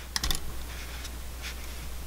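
Small light clicks and ticks of thin 24-gauge copper wire being bent and worked by the fingers on a tabletop: a quick cluster just after the start and one more faint tick about a second and a half in.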